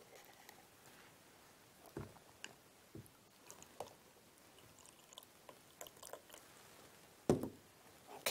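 Faint pouring of water from a glass jug into a glass beaker, with a few light clinks of glass. Near the end comes one louder, short knock.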